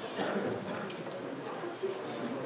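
Murmur of many people talking at once in a large lecture hall, with a sharp knock near the end.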